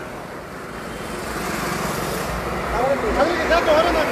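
Highway traffic passing close by: vehicle noise builds from about a second in, with a low engine rumble in the second half.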